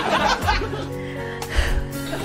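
A woman chuckling briefly at the start, then soft background music with held, sustained chords.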